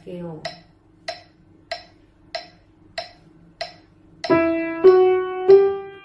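A metronome ticking steadily, about three ticks every two seconds. About four seconds in, an upright piano starts a rising scale, one note per tick: the opening notes of E harmonic minor.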